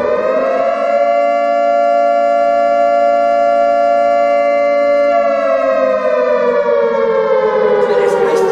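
A loud, sustained siren-like wail of the air-raid kind. It holds one steady pitch, then slowly falls from about five seconds in.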